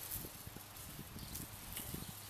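Wind buffeting the microphone in low, uneven rumbles, over a faint steady hiss.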